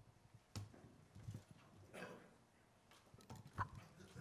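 Near silence: room tone with a few soft knocks and rustles, the sharpest near the end.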